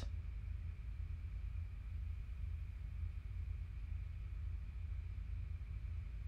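Quiet room tone: a steady low hum with a faint thin high whine, and no distinct events.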